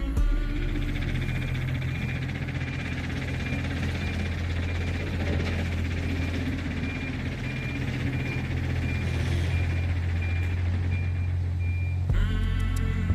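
Nearby heavy construction machinery: a diesel engine running with a steady low rumble while its reversing alarm beeps at an even pace.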